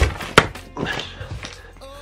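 Opening a cardboard flat-pack furniture box and handling its white particleboard panels: two sharp knocks about half a second apart, then softer rustling and bumping of the cardboard and panels.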